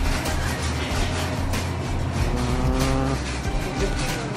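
Background music over a steady low rumble, with scattered light clicks; a held musical note sounds from about halfway through to near the end.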